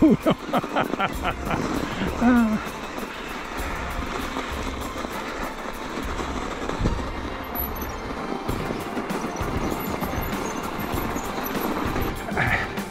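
A short laugh, then the steady rushing noise of a Haibike Xduro e-mountain bike riding along a packed-snow trail: tyres rolling over the snow and wind on the microphone.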